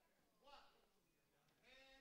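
Near silence, with two faint, brief snatches of a distant voice.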